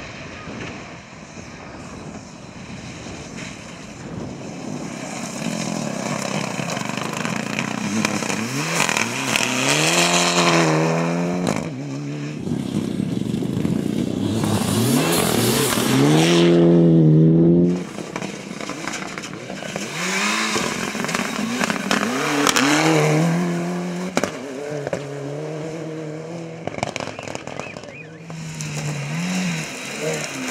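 Mitsubishi Lancer Evolution rally car's turbocharged four-cylinder at full throttle on gravel, revving up through the gears as it approaches, loudest as it passes close and sprays gravel, then cut off suddenly. A second rally car, a Renault Clio, follows, its engine revving hard through repeated upshifts.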